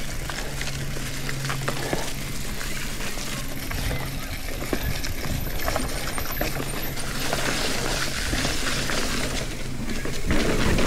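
Mountain bike rolling downhill over a leafy dirt trail: tyres crunching over leaves and roots, and the chain and bike parts rattling and clinking over the bumps, under a steady low hum.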